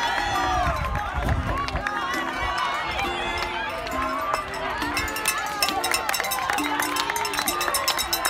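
A crowd of spectators shouting and cheering on runners as they go past, many voices overlapping, with music playing underneath; from about halfway through, a fast patter of sharp clicks joins in.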